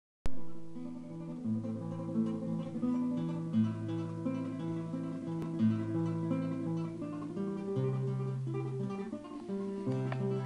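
Classical guitar played fingerstyle: a melody over sustained bass notes, opening with a loud plucked chord.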